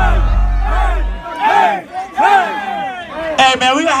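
Bass-heavy hip-hop track from a DJ's club sound system, with the bass cutting out about a second in, leaving a concert crowd shouting and yelling.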